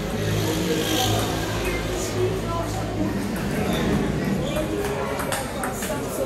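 A table tennis rally: the ball clicking off paddles and the table, over a steady murmur of voices in a large, echoing hall.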